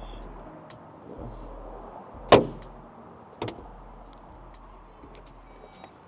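The front trunk lid of a Porsche Taycan being shut: one sharp slam a little over two seconds in, then a smaller knock about a second later.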